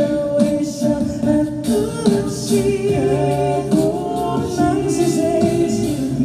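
A five-voice a cappella group of male and female singers singing a ballad in close harmony, with held chords under a lead melody, amplified through the hall's sound system.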